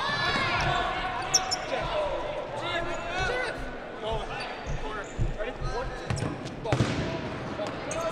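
Sneakers squeaking on a hardwood gym floor and rubber dodgeballs thudding during a dodgeball match, with players' voices calling out in the reverberant gym. The squeaks come mostly in the first second, and the thuds are scattered through the second half.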